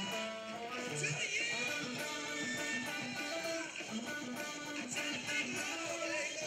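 Electric guitar playing a lead line of quick single notes, with a bent note about a second in.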